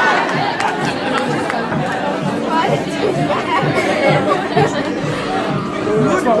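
Crowd chatter: many people talking at once in a large room, a steady babble of overlapping voices.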